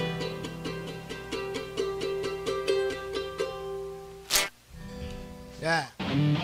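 Acoustic band playing softly: plucked acoustic guitars and a small four-string guitar over held violin notes. A sharp click comes about four seconds in, and a brief sound falling in pitch comes near the end.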